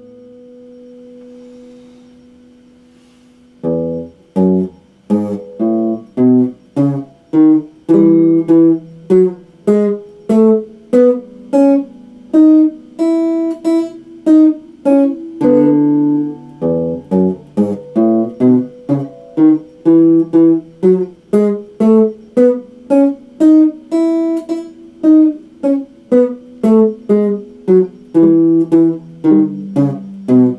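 Solid-body electric guitar: a held note rings and fades for the first few seconds, then a steady line of single picked notes and double stops follows, about two a second.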